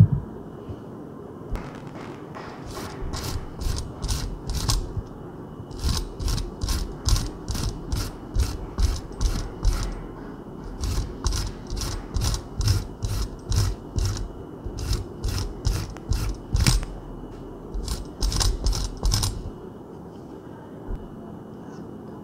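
Ginger root that has not been frozen, grated by hand on a grater. It goes in quick rasping strokes, about three a second, with a few short pauses between runs.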